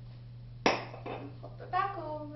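A single sharp knock with a short fading tail, followed near the end by a brief wordless vocal sound from a woman.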